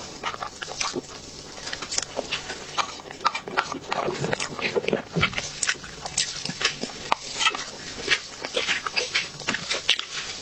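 Close-miked eating sounds of soft chocolate mousse cake taken from a spoon: chewing and lip smacks in a steady stream of short clicks.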